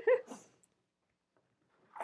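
A woman's voice trailing off in a short laugh, then near silence, with a brief burst of noise starting right at the end.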